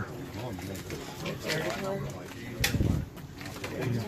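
Low murmuring voices of people close by, with a single thump a little under three seconds in.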